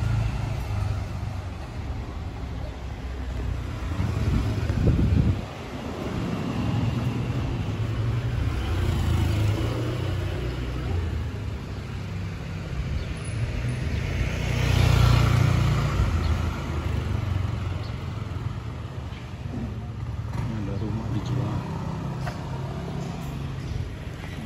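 Street ambience while walking: traffic sound over a low rumble, with a motor vehicle passing that swells and fades a little past the middle.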